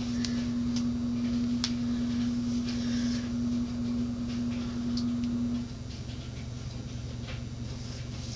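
Washing machine running: a steady hum over a low rumble. The hum cuts off about six seconds in, leaving the rumble. Faint ticks and rustles of hands working through wet hair and clips sit on top.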